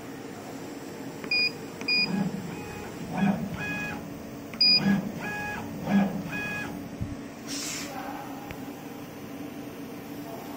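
Laser cutting machine being set up: short electronic beeps from the control panel's keypad and several short jogs of the cutting head, its stepper motors whining up in pitch, holding and winding down, over a steady machine hum. A brief hiss of air comes a little past the middle.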